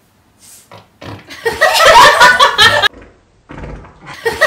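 A small child blowing raspberries against someone's arm, buzzy lip-fart sounds mixed with laughter, in two loud stretches: one starting about a second in, another near the end.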